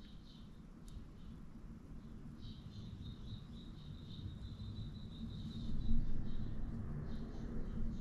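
Faint handling sounds of fingers and a squeeze glue bottle working the soft plastic head of a swimbait as glue is run along the seam. A thin high squeak-like tone sounds through the middle, and there is a soft knock about six seconds in.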